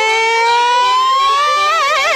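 Pop song with one long held vocal note that rises slowly in pitch and breaks into vibrato near the end.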